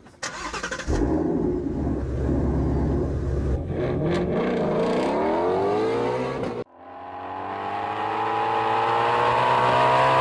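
Ford Shelby GT350 Mustang's V8 engine started about a second in, then revved with its pitch climbing. After an abrupt cut, a second engine note climbs steadily as the car accelerates hard.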